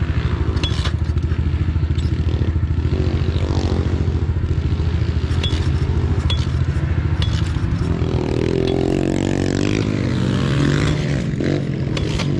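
Small single-cylinder four-stroke pit bike engine idling steadily, with the revs rising and falling briefly about two thirds of the way through. A few light clicks and scrapes sound over it in the first half.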